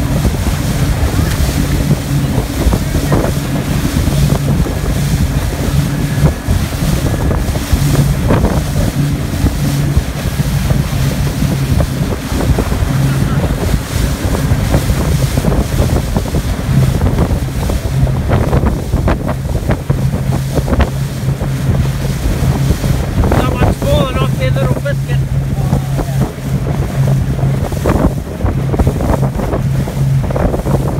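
Motor boat under way at speed, its engine a steady low drone, with wind buffeting the microphone and water rushing against the hull. A brief high-pitched call cuts through about three quarters of the way in.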